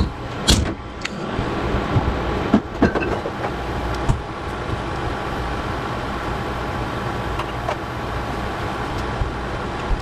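Ground beef cooking in a frying pan on an induction cooktop: a steady sizzle over the cooktop's fan hum. A few sharp clicks and knocks come in the first few seconds, as a sauce bottle is handled and set down.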